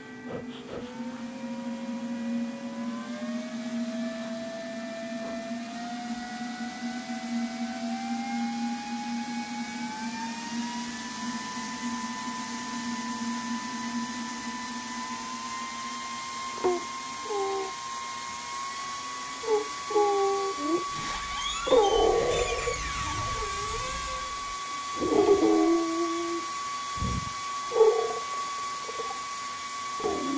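Eerie electronic horror sound design. A drawn-out tone climbs slowly in small steps for about twenty seconds over a low steady hum. From about halfway through, short warped, distorted sounds break in, with a burst of hiss a little after two-thirds of the way.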